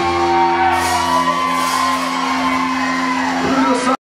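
Live rock band's closing chord held and ringing on guitars and bass, with no drums, while the bar crowd whoops and shouts. The sound cuts off suddenly near the end.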